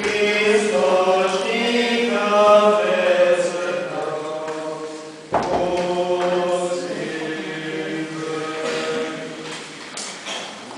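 Orthodox liturgical chanting: voices singing held, slowly changing notes. About halfway through the sound breaks off abruptly and the chanting picks up again at once, louder.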